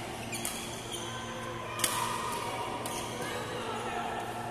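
Badminton rackets striking a shuttlecock in a doubles rally: sharp hits about half a second in and near two seconds, with a fainter one near three seconds, over a steady hall hum and distant voices.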